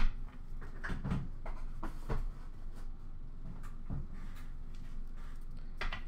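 A stack of trading cards being handled and tapped, with a handful of soft scattered knocks and rustles.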